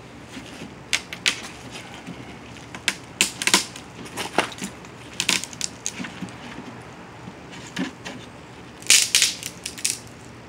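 Dry wooden stick being snapped and broken into pieces by hand: a string of sharp, irregular cracks and splintering snaps, with a quick cluster near the end.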